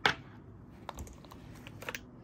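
A sharp tap at the start, then a few faint light clicks about a second in and again near the end: small plastic cosmetic containers being handled, with a lip gloss tube drawn out of a mesh pouch.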